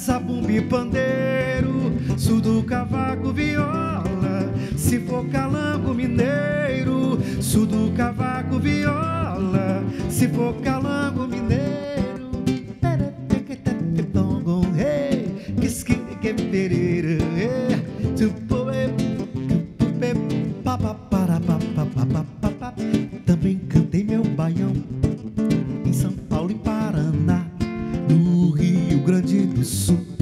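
Two acoustic guitars playing an instrumental passage of a forró song, with plucked melody notes over chords.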